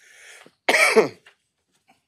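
A person clears their throat once, loudly and briefly, about a second in, just after a short breath.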